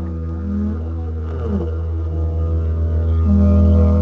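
A didgeridoo playing one steady low drone, its overtones shifting in pitch as it goes.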